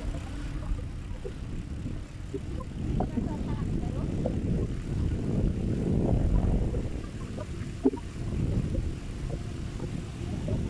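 Low rumble of wind buffeting the microphone and tyres rolling on asphalt from a moving bicycle, swelling to its loudest around the middle and easing off again.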